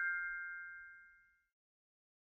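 The ringing tail of a bright, bell-like ding sound effect on the channel's logo animation, fading away over about a second and a half.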